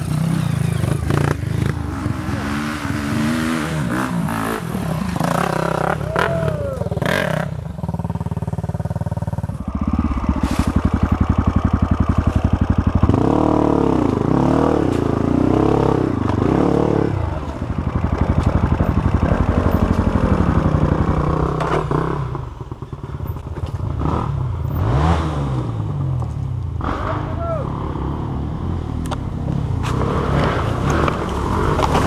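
Honda CRF 250F single-cylinder four-stroke dirt bike engine, heard close up from on the bike, revving up and down again and again as it is ridden over a rough trail. Knocks and clatter from the bike over the ground come through.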